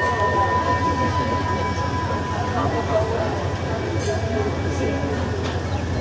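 A hand-rung station bell's single note fading out over the first two and a half seconds, the departure signal for the train. Under it, the train's low rumble as it starts to pull away from the platform, with passengers' voices in the background.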